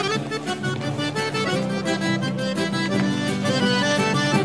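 Accordion playing an instrumental chamamé passage, a melody moving in steps over held chords, with no singing.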